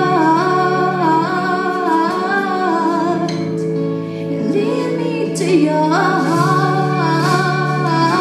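A woman singing a slow worship song into a microphone, with a live band's steady held chords underneath, amplified in a large hall.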